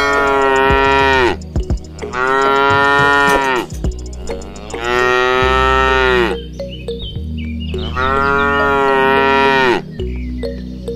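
Battery-powered walking toy cow playing its recorded moo, four long moos about a second and a half each that drop in pitch as they end, over a steady low hum.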